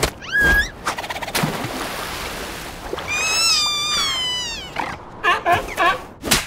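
Cartoon seal characters' voiced animal sounds. There is a short rising squeak near the start, then a breathy noise, then a long whining call about three seconds in that drops in pitch as it ends. A quick run of short squeaky syllables comes near the end.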